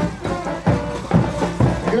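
Band music for the caporales dance: a melody with bending, sliding notes over a steady accompaniment.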